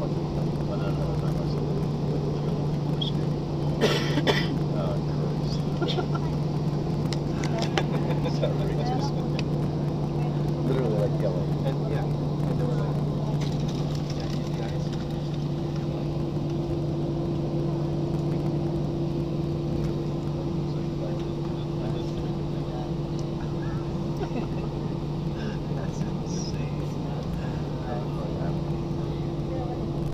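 Airliner jet engines heard from inside the cabin during takeoff: a steady drone with a low hum. About four seconds in, a higher steady tone joins it, together with a brief rattle.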